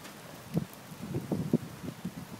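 Wind on the microphone with a few short, soft thumps and rustles, several of them close together in the second half.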